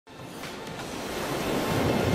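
Ocean surf, a steady wash of breaking waves, fading in from silence and growing louder.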